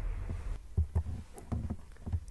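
A few soft, low thumps, about five in just over a second, over a faint hum.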